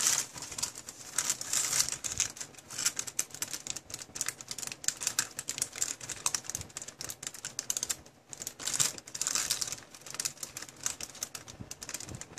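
Tissue paper rustling and crinkling as hands unfold it inside a cardboard box, in a run of quick, irregular crackles with a short pause about eight seconds in.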